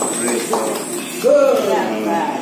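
People's voices talking, with no clear words picked out.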